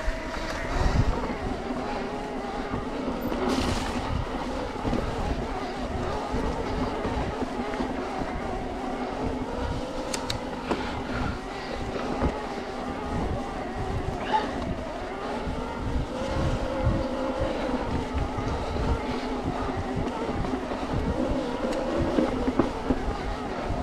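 Specialized Turbo Levo e-bike's mid-drive motor whining steadily under pedal assist, its pitch wavering slightly with cadence. Frequent low knocks and rumble come from the tyres over the stony trail.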